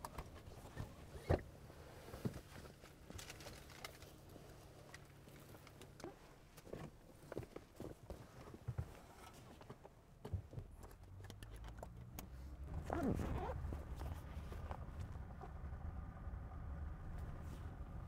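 Quiet car interior with scattered small knocks and rustles of a child rummaging through a backpack. About two-thirds of the way in, a low steady rumble builds and carries on.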